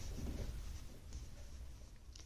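Faint rustle and scratch of knitting needles and wool yarn as stitches are worked in two-by-two rib, over a low steady hum.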